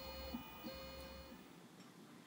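Shapeoko 3 CNC's stepper motors whining faintly at a steady pitch through two short, slow axis moves of a touch-probe routine, the second starting just after the first stops and ending a little after a second in.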